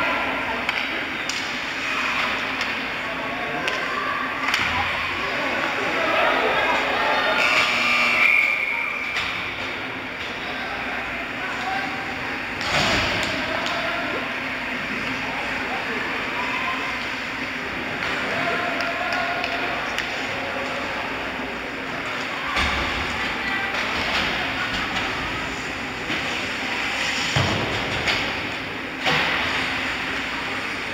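Sound of an ice hockey game in an indoor rink: indistinct calls and chatter from players and spectators over a steady low hum. A few sharp thumps are heard, the loudest about halfway through and two near the end.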